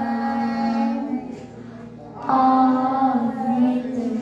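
Young children singing together into microphones over a sound system, holding long notes; the singing drops away after about a second and comes back strongly a little after two seconds in.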